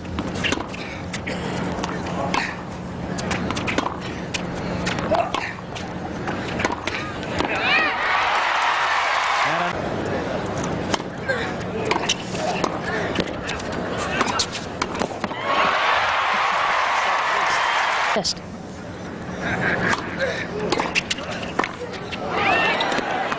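Tennis rally on an indoor court: the sharp pops of the ball off the rackets and the court, with crowd noise under it. The crowd noise swells loudly twice, about eight seconds in and again around sixteen seconds, the second swell cutting off suddenly.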